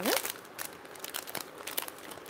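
A voice trails off at the start, then faint crinkling with scattered small clicks, the sound of something being handled off-camera.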